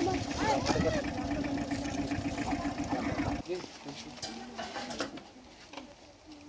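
Indistinct outdoor voices of several people over a steady low hum and background noise. The sound cuts off abruptly about three and a half seconds in, leaving quieter background noise.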